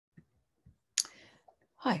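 A sharp click about a second in, with a few fainter ticks before and after it, then a woman's voice starts to say "Hi" right at the end.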